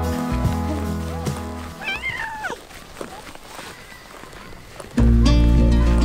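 Background acoustic guitar music fades out, and about two seconds in a house cat meows once, a short wavering call. The guitar music comes back in suddenly and loudly near the end.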